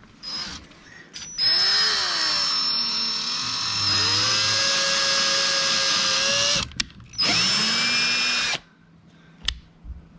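Ryobi 18 V cordless drill boring a pilot hole through a plastic kayak mount plate and hull, in two runs: a long one of about five seconds, whose whine dips in pitch and then rises and holds, and a short one of about a second and a half.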